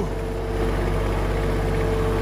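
Kubota compact tractor's diesel engine running at a steady, even pitch as the tractor drives slowly forward.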